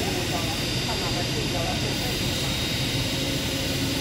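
Forklift engine running steadily with an even low hum, and voices talking faintly in the background.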